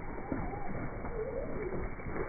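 A flock of Zwartbles sheep and lambs running past over damp grass, their hooves thudding, with wavering animal calls over the hoofbeats.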